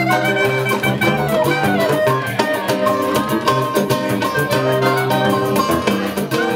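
Brazilian samba played live by a small acoustic band: a pandeiro keeping a fast, even rhythm under strummed cavaquinho and guitar, with a clarinet.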